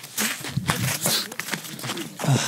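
Footsteps crunching on snow and rock, uneven and irregular, with faint voices underneath.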